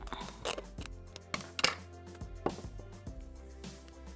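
Background music, with scissors snipping and plastic cling film crinkling in a few short, sharp bursts as a sheet is cut from the roll.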